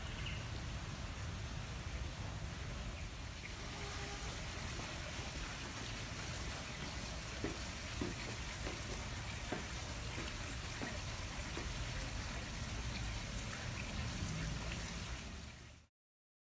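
Water trickling in a stone garden pond, with a few short drips or small splashes about halfway through, over a steady low rumble. The sound cuts off abruptly near the end.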